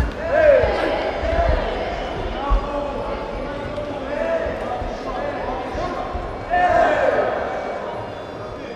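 Dull thuds of blows and footwork in a Muay Thai bout, the sharpest near the start and about two and a half seconds in, with loud shouts echoing in a large sports hall, strongest about half a second in and again near the end.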